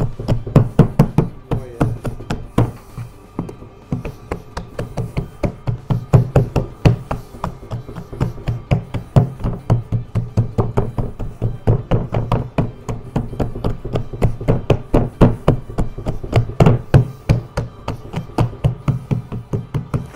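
Hands patting and pressing balls of bread dough flat on a cloth-covered wooden board: rapid, irregular dull thuds, several a second.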